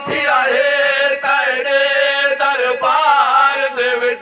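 A man reciting a noha (Shia lament) into a microphone, singing long, drawn-out, wavering notes that carry through the loudspeaker.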